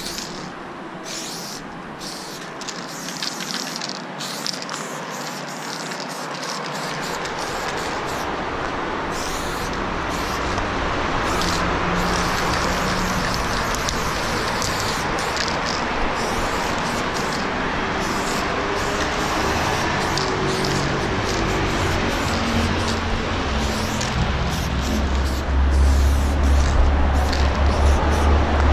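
Aerosol spray can hissing steadily as black paint is sprayed onto a wall, with brief breaks in the spray. A vehicle's engine rumble builds and grows loud over the last few seconds.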